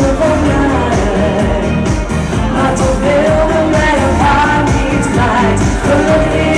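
A woman singing a pop song live into a handheld microphone over amplified backing music with a steady drum beat. She holds long notes and climbs in pitch partway through.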